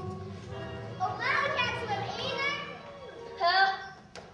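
Children's high-pitched voices calling out on a stage, in two bursts with the louder one near the end, as the background music fades away in the first second.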